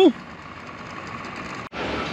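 Outboard motors of a small group of Gheenoe boats running out on the water, a steady hum that cuts off suddenly near the end.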